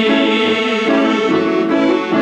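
Live instrumental music: an electric guitar played along with sustained, held chords from another instrument, the notes changing about every half second.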